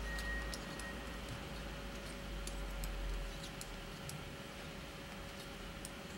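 Knitting needle tips clicking lightly and irregularly against each other as brioche stitches are slipped and purled, over a faint steady hum.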